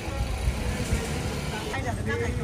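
Outdoor street ambience: a steady low rumble with indistinct voices in the background.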